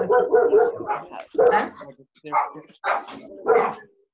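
A dog barking repeatedly, about six short barks spaced half a second to a second apart.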